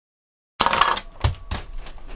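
An L.O.L. Surprise Confetti Pop plastic ball bursting open after its release string is pulled. The sudden rustling pop starts about half a second in, followed by several light plastic clicks and knocks as its contents tumble out.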